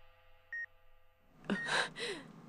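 Hospital heart monitor beeping, one short high tone about every second. About a second and a half in comes a louder breathy gasp, a sharp intake of breath.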